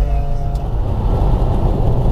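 Steady engine and road rumble of a car driving at speed, heard inside the cabin. A drawn-out voice note trails off in the first half-second.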